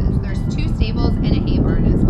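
Wind buffeting the microphone as a heavy low rumble under a woman talking, with faint background music.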